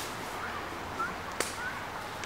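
A single sharp crack about one and a half seconds in, over a steady outdoor hiss with a few short, rising chirps.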